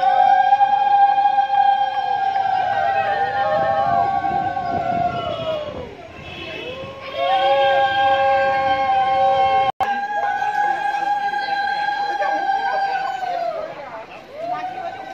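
Several conch shells (shankh) blown together in long held notes at different pitches, each note bending up as it starts and sliding down as it fades. The blowing breaks off about six seconds in and starts again a second later.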